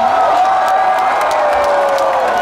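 Rock-festival crowd cheering and clapping as a song ends, with one long held note sliding slowly down in pitch.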